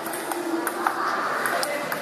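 Table tennis ball clicking off the bats and the table during a rally, several sharp ticks at uneven spacing, with voices murmuring in a large hall behind.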